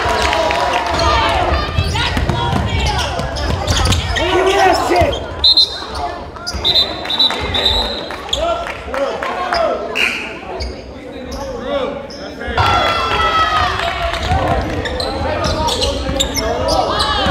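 Basketball game sound in a gymnasium: a basketball bouncing on the hardwood court amid indistinct voices of players and spectators, all echoing in the hall. A few short high squeaks come about halfway through.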